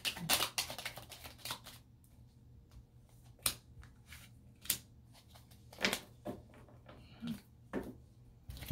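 A deck of tarot cards being shuffled by hand: a quick run of crisp card flicks and snaps in the first couple of seconds, then only occasional single card clicks.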